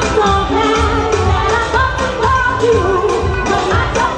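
A woman singing lead into a handheld microphone, her voice sliding between held notes, over loud live backing music with a steady low drum beat.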